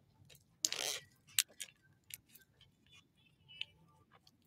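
Faint handling noises from a pair of eyeglasses turned over in the hand: a brief rustle under a second in, then a few scattered light clicks and a small squeak near the end.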